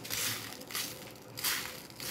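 Loose seed beads rustling in a plastic tub as a needle is pushed through them to pick them up, in three short scrapes.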